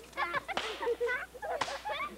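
High, wavering vocal noises, several voices rising and falling in pitch, with one sharp crack like a slap or hand clap about one and a half seconds in.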